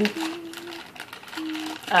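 Plastic wrap crinkling and peeling off a sticky, half-melted gummy candy, with a soft hummed note held twice.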